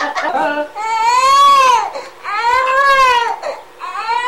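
Newborn baby crying: two long wails that rise and fall in pitch, about a second each, and a third beginning near the end. Short bursts of a woman's laughter come just before the first wail.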